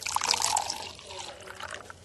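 A drink being poured, the splash strongest at the start and tapering off.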